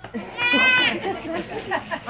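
One high-pitched, wavering cry about half a second long, near the start, followed by several people talking over each other.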